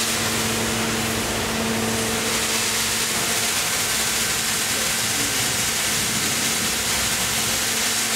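3D water jet cutting machine running: a loud, steady hiss from the high-pressure water jet with a low hum underneath.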